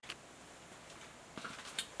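Quiet room tone with a faint click at the start and a few light ticks near the end.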